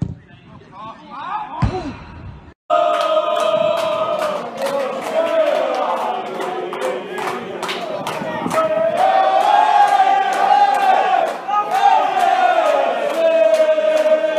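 A single thud at the start over quiet pitch-side sound. Then, from a sudden cut about two and a half seconds in, loud chanting or singing by many voices over a regular beat of about two strikes a second.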